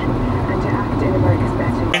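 Steady low rumble of engine and road noise inside a moving vehicle's cabin.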